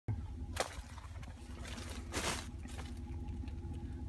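Pickup truck engine idling, a steady low hum heard inside the cab, with two brief rustles about half a second and two seconds in.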